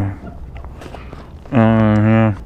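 A man's voice trailing off at the start, then about a second and a half of quieter wind and faint scuffing steps, then a long, steady drawn-out "sooo" from about a second and a half in.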